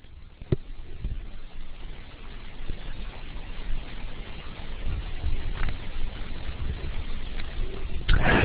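Steady rumbling background noise picked up by an open microphone, with a few faint clicks, the first about half a second in.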